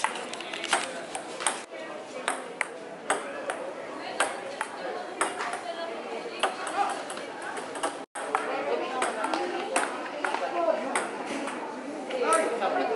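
Table tennis rally: the ball clicking back and forth off paddles and a Pongori table, a sharp tock about every half second, over a murmur of voices. The sound cuts out for an instant about eight seconds in.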